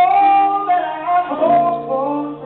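Gospel song playing: a sung melody comes in loudly at the start, sliding between notes over held accompaniment chords.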